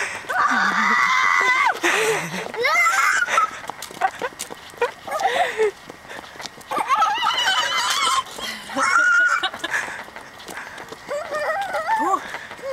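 A toddler's high-pitched squeals and shrieks, several in a row, with a long held squeal in the first couple of seconds.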